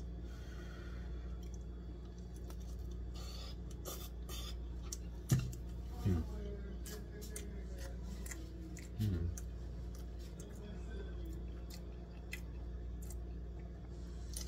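A person chewing a mouthful of instant cup noodles, with scattered wet mouth clicks and three short hummed "mm" sounds in the middle, over a steady low hum.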